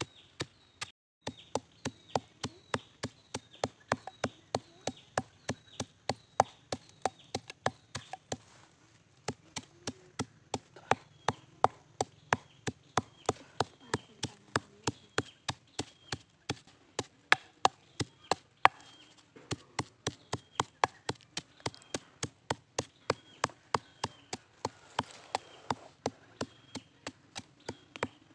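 Wooden pestle pounding coarse salt and fresh red chilies in a wooden mortar: steady, sharp strikes about three a second, with a few brief pauses.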